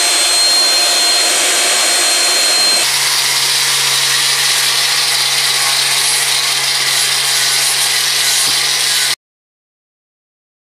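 Belt sander running against a white cedar propeller blade, cutting in the root fillets, with a steady high motor whine over the sanding noise. About three seconds in the sound changes to a different power tool working the wood, with a steady low hum under the grinding; it cuts off abruptly near the end.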